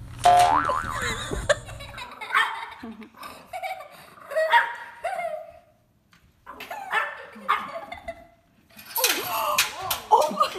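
A puppy yipping and whining in short, repeated high cries whose pitch slides up and down. A louder, noisier burst comes near the end.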